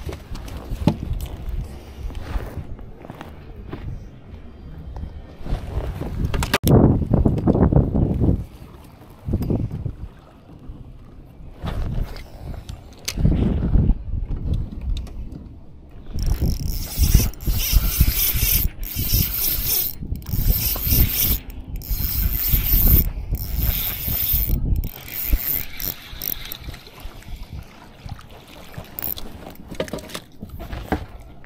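Fishing reel cranked in several runs in the second half, a high whirring that stops and starts. A low rumble of wind on the microphone runs underneath and is loudest in the first half.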